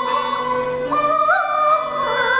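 High-pitched Peking opera singing in a woman's voice, moving through a few short notes and then holding one long note from about a second in, with a small upward lift partway through.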